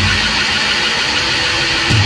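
A powerviolence band recording in a harsh passage of dense, distorted noise. The heavy low end drops out at the start and comes back in near the end.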